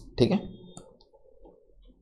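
A short spoken word, then a few faint, sharp clicks over a low, quiet rustle.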